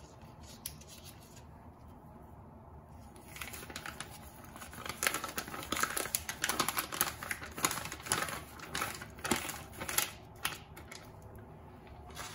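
A plastic packet of poppy seed paste crinkling and crackling as a spoon scoops the thick paste out into a glass bowl. The crackling starts after about three seconds of near quiet and runs in quick, irregular clicks until near the end.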